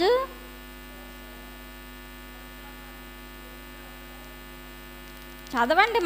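Steady electrical mains hum from a microphone and sound system during a pause in a woman's speech. Her voice trails off just after the start and comes back near the end.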